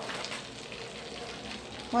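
Melted margarine sizzling steadily in a non-stick pan over lowered heat as wheat flour is spooned in, the start of a roux for a white sauce.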